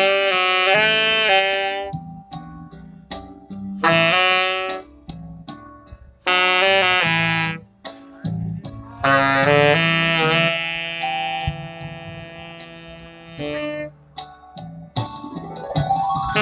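A saxophone playing a slow melody in short phrases of a second or two with brief breaths between them, over a keyboard accompaniment with held chords and low bass notes.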